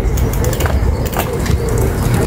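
Steady low wind rumble on the microphone outdoors, with a few light clicks about halfway through.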